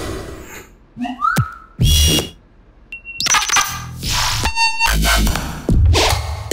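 A string of short electronic bass-music synth sounds, each hit a different randomly generated patch: a pitch glide, a noisy hit, a brief high tone, a buzzy sustained note and a fast stuttering buzz about four and a half seconds in, with short gaps between them.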